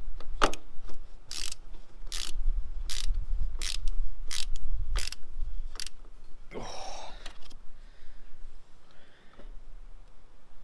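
Screwdriver turned by hand to drive a screw into a metal awning rail, with a sharp click about every three-quarters of a second, eight or nine in all. About two-thirds of the way through comes one short, louder rush of noise.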